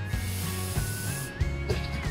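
Aerosol hairspray sprayed into an open glass jar: one hiss lasting about a second and a half, then cutting off, over background music.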